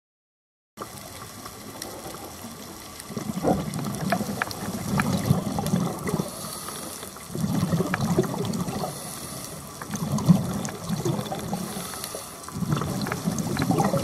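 Scuba diver's regulator underwater, exhaled bubbles rumbling out in repeated breaths, each lasting two to three seconds with a shorter quiet gap between, beginning about a second in. Faint scattered clicks sound throughout.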